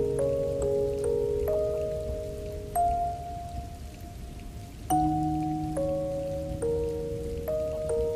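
Music-box arrangement of a song: a slow melody of plucked, ringing metal notes with a fuller chord about five seconds in, over a steady patter of rain.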